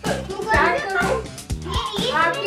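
Children talking and calling out over background music.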